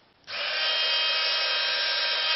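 Small electric drill starting up about a quarter second in and running at a steady whine, a thin bit set against a pine wood stick to drill it.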